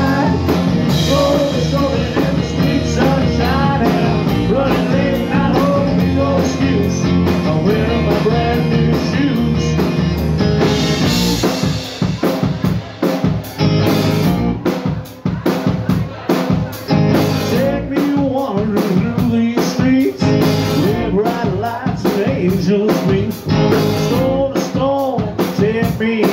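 Live rock band heard through the soundboard mix: drum kit, bass and electric guitar playing a pop-rock song. It is full and sustained at first; about eleven seconds in a cymbal crash leads into a choppier, stop-start passage driven by sharp drum hits.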